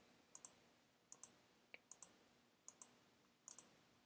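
Faint computer clicking: five quick pairs of clicks, each pair a button press and release, evenly spaced about 0.8 s apart.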